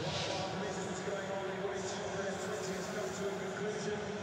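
Steady, low background sound of a largely empty athletics stadium, with a brief swoosh at the very start.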